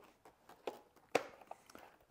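A few soft knocks and handling clatters, the loudest a little past halfway: a person moving about and picking up a robot vacuum.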